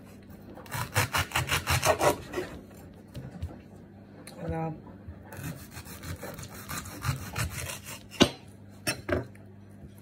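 Serrated knife sawing through a leek on a wooden chopping board in two runs of quick back-and-forth strokes. Near the end comes a single sharp knock as the blade hits the board.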